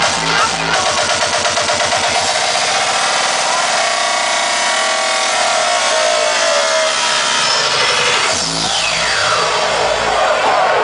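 Loud hardstyle dance music played over a club sound system. The steady kick drum stops about a second in, giving way to a fast, even pulse and a rising synth build-up. Near the end a falling sweep brings the bass back in.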